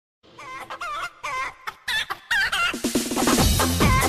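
Several short hen clucks, wavering in pitch, then electronic music comes in about two and a half seconds in, its low notes repeatedly falling in pitch.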